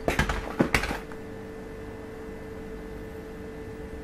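A quick cluster of rustles and taps in the first second as small paper product packets are handled, then quiet room tone with a faint steady hum.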